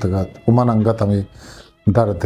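A man's voice reciting in long, drawn-out phrases, with a break before a new phrase starts near the end, over faint background music.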